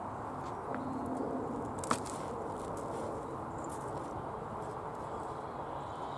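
Hands rummaging through loose, crumbly potting compost on a plastic tarp, with soft scattered rustles over steady outdoor background noise and one sharp click about two seconds in.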